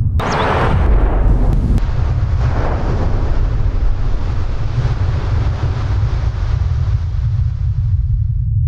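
A deep, steady rumble with a rushing, wind-like noise over it, loudest in the first two seconds: a cinematic sound-design bed of the kind used for heavy surf and wind.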